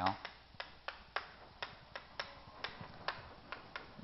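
Chalk clicking and tapping against a chalkboard as words are written: a dozen or so sharp, irregular clicks.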